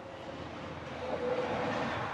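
A passing vehicle's rumble, swelling to its loudest about a second and a half in and then fading.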